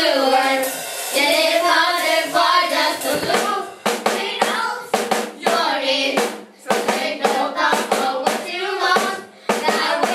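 Children singing into microphones, with steady hand clapping and a drum kit keeping a beat of about two strokes a second from about four seconds in.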